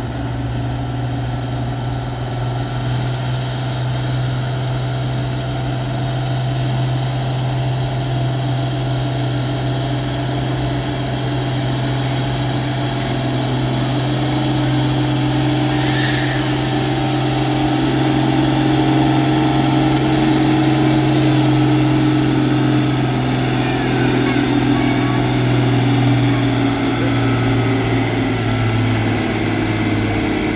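Oliver 1800 farm tractor's six-cylinder engine running hard under full load while pulling a weight-transfer sled: a steady drone that grows louder and dips in pitch near the end.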